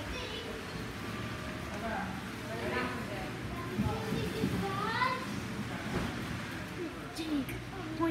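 Indistinct voices of people talking in the background, over a steady low hum.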